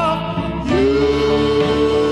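Slowed-down doo-wop recording: a male vocal group, after a brief dip, holds one long note in two-part harmony from about half a second in.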